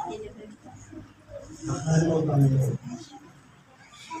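A man speaking: one short phrase about two seconds in, with quiet pauses around it.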